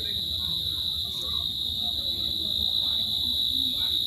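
A steady high-pitched tone that does not waver, over faint background voices and a low hum.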